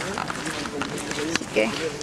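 Voices of a group talking while walking, with footsteps on gravel and a few short clicks.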